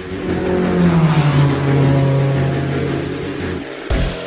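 A revving engine sound effect in an edited outro: its pitch drops about a second in and then holds steady, ending in a short sharp hit near the end.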